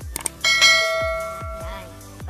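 Bell chime sound effect of a subscribe-button overlay: a quick click or two, then a bright ding about half a second in that rings and fades over a second and a half. Background music with deep falling drum hits runs underneath.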